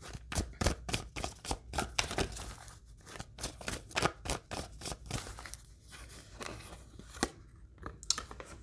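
Tarot cards being shuffled by hand: a run of quick, soft, irregular card clicks and flicks, a few each second.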